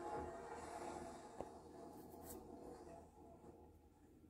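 Faint soundtrack of the ride film playing through a TV's speakers: a low steady hum that slowly fades away, with a single small click about a second and a half in.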